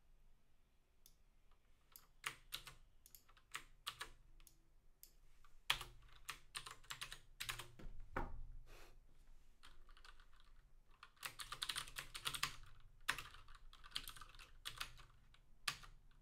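Typing on a computer keyboard: irregular single keystrokes, with two quicker runs of keys a little past the middle.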